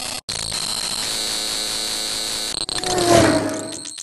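Glitch-style electronic sound effect for an animated logo: harsh digital static with a steady high whine, cut off abruptly twice, then a short, slightly falling tone that is the loudest part.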